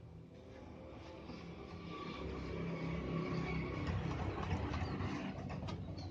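A motor vehicle passing by: its engine swells over a few seconds and eases off near the end.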